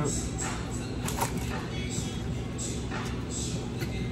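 Background music and room noise in a restaurant, with a few short clicks of a metal fork working into food on a foil-lined plate.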